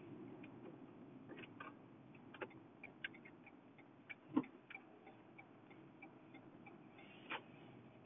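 Quiet car cabin noise with a faint low rumble and scattered light ticks and clicks, irregularly spaced; the sharpest click comes about four seconds in.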